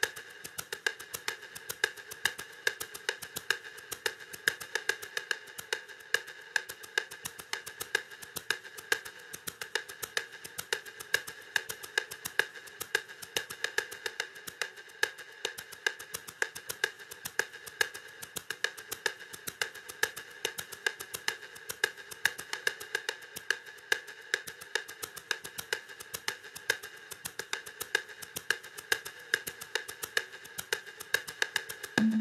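Roland TR-808 drum machine percussion on its own, with no drum kit, playing a steady repeating pattern at 108 bpm. It is made of short, clicky hits with no deep bass drum.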